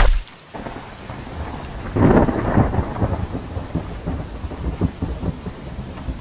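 A quick falling whoosh of a loosed arrow at the very start, then a thunder rumble with crackles that swells about two seconds in and rolls on, laid in as a dramatic sound effect.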